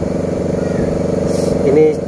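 A motor running steadily at an even pitch, with no change in speed.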